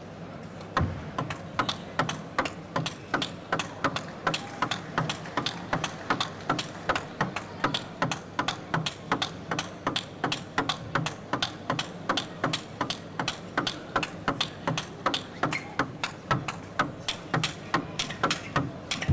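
Table tennis ball knocked back and forth between two players, celluloid ball clicking off the bats and the table in an even, unbroken rally of about three strikes a second, starting about a second in.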